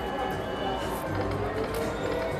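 Video slot machine spinning its reels amid casino-floor music and steady electronic tones, with a couple of faint clicks.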